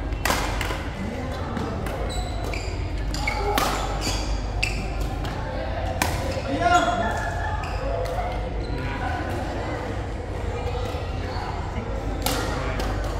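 Badminton rally: a series of sharp racket hits on a shuttlecock, with short squeaks of shoes on the court floor, echoing in a large hall.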